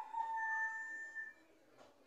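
A rooster crowing: the drawn-out final note of the crow, one long call that falls slightly in pitch and ends about a second and a half in.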